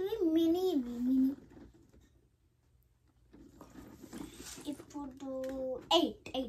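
A girl's voice in drawn-out sing-song tones with no clear words, gliding down in pitch for about a second, then a short pause, then held humming notes with a few light clicks near the end.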